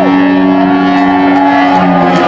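Live electric slide guitar with the rock band: a slid note falls away at the very start, then long sustained notes ring out, and a higher held note comes in a little past halfway.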